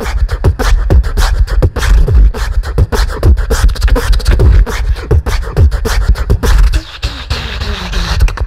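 Beatboxer performing live through a handheld microphone: a fast, dense beat of vocal kick drums, snares and hi-hat clicks. The beat drops out briefly about seven seconds in, and a low gliding tone follows.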